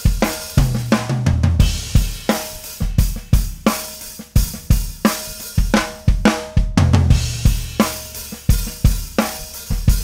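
Drum kit played in a steady groove of kick, snare, hi-hat and cymbals, with two short tom fills stepping down in pitch, one about a second in and one near seven seconds. The toms carry gaffer's-tape strips with cymbal felts laid on the batter heads, which act as a gate: each tom strike sounds in full, then its ring is cut short.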